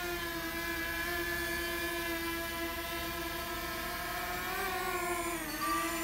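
Small quadcopter drone's propellers running in a steady whining hum. The pitch rises slightly and then dips near the end.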